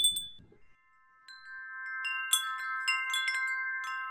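Wind-chime-style sound effect of a subscribe reminder animation: a short bright bell ding right at the start, then, after a brief gap, a held cluster of chime tones with a light tinkling of many small strikes over it.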